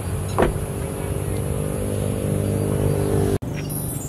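Vehicle engine running with a steady low hum that climbs slowly in pitch, with a short sharp knock about half a second in. The sound cuts off abruptly shortly before the end.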